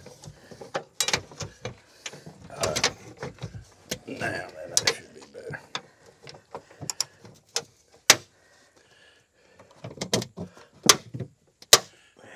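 Knocking, scraping and clicking of a truck's large air-cleaner housing being handled and worked back into place on an old Mack truck, with a sharp click about eight seconds in and two more near the end.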